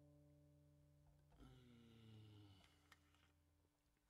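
Near silence: the acoustic guitar's strings ring faintly and fade away, with a faint click near the end.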